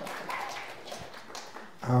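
Soft, breathy laughter close to a handheld microphone, with small clicks, ending in a spoken "um" near the end.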